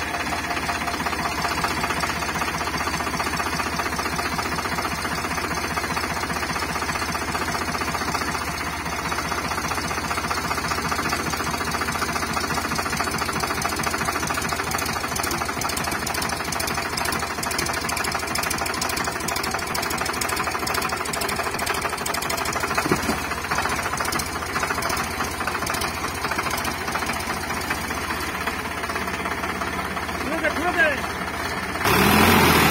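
Eicher 5660 tractor's diesel engine running hard with a rapid, steady clatter, heard close up, as the mired tractor tries to drive out of deep mud.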